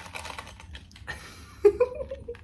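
Light clicks and rustling of a plastic lanyard card holder being handled, then a short, loud, high-pitched excited vocal sound near the end.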